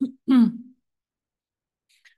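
A person clearing their throat once, briefly, at the very start.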